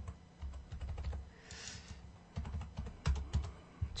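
Computer keyboard being typed on in irregular bursts of key clicks and low knocks.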